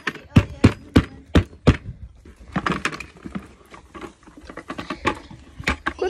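Footsteps while walking: a run of sharp thuds about three a second, then softer rustling and handling noise.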